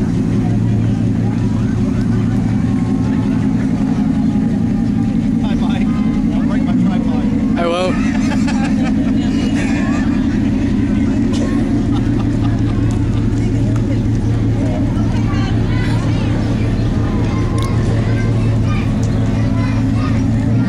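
Lifted full-size pickup truck's engine running steadily at parade pace, a deep, even drone, with voices of the crowd over it.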